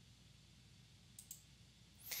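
A computer mouse button clicked, two quick clicks (press and release) a little over a second in, against near silence.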